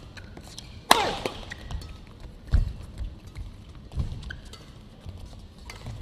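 Badminton rackets striking a shuttlecock during a doubles rally: sharp smacks about every one and a half seconds, the first the loudest.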